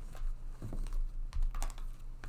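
Tarot cards being picked up off a table and stacked in the hands: a run of irregular light clicks and taps of card against card and card against table.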